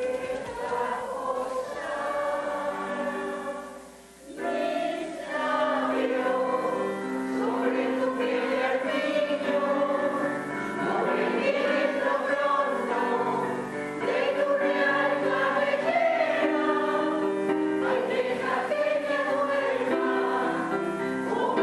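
A mixed choir of older men and women singing together in rehearsal, with a short pause between phrases about four seconds in.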